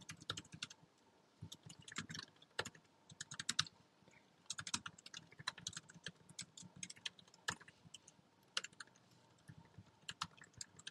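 Computer keyboard typing: quiet, quick keystroke clicks in irregular runs with short pauses between them.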